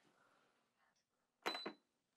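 Soleus Air portable air conditioner's control panel giving a short high beep with two quick clicks about a second and a half in, as its power button is pressed.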